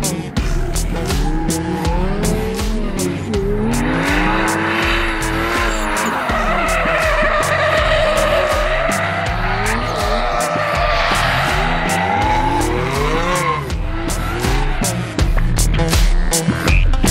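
A drift car's engine revving up and down while its tyres squeal through a long sideways slide in the middle, falling away near the end. Background music with a beat plays underneath.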